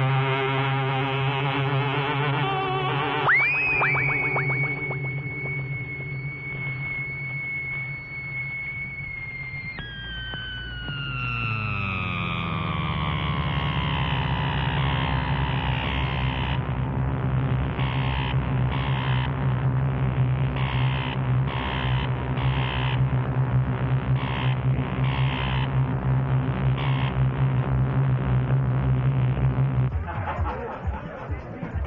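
Electronic music: held synthesizer tones over a steady low drone. About three seconds in, a high tone sweeps up and holds. Around ten seconds in, the tones glide slowly downward, and from about sixteen seconds short high pulses come at uneven intervals.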